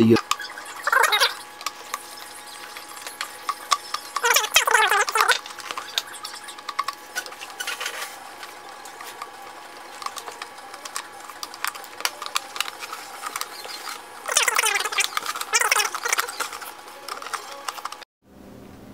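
Small clicks and scrapes of a screwdriver backing screws out of a molded plastic lamp base, with short bursts of voice about a second in, around four seconds in, and again near fifteen seconds.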